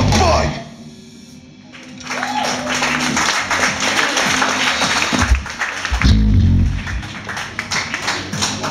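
Live hardcore punk band finishing a song, the full band cutting off about half a second in. After a brief lull the crowd claps and cheers, with a low drum thump and a few stray bass notes from the stage near the end.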